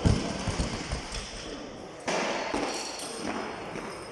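A loaded barbell with rubber bumper plates dropped onto a weightlifting platform: a heavy thud at the start, followed by a few smaller rebounds as it settles. Another heavy thud comes about two seconds in.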